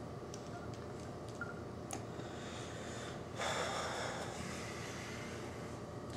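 Quiet room tone with a single faint click about two seconds in, then a person breathing out, a hiss lasting over a second about halfway through.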